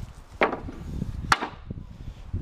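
Two sharp wooden knocks about a second apart, timber lengths clattering against each other, over a low rumble.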